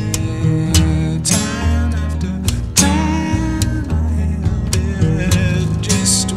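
Early-1970s folk recording: acoustic guitar being plucked over deep bass notes, playing steadily.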